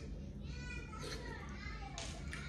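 A quiet wordless voice, high and gliding in pitch, starting about half a second in, over a low steady room hum.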